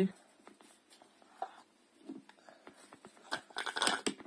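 A child slurping smoothie through a plastic straw: mostly quiet with faint small sounds, then a short noisy slurp near the end as the last of the drink is sucked from the bottom of the mug.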